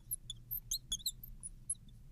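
Marker squeaking on a glass lightboard as it writes: a quick, irregular series of short, high squeaks.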